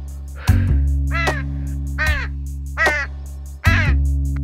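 A crow cawing four times, each caw falling in pitch, over background music with a steady low drone. A thump sounds just before the first caw.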